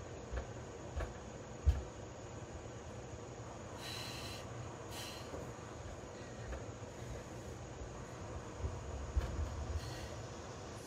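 Low, dull thuds of a cast-iron kettlebell being gripped, set down and lifted on a rubber floor mat, several in the first two seconds and a cluster near the end, with two short hisses in between.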